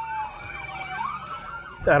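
Several police car sirens sounding at once: one slow wail falls in pitch and turns upward about a second in, over quicker yelping sweeps from the other cruisers.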